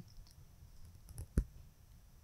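Quiet room with a few faint small clicks, and one sharper click about one and a half seconds in.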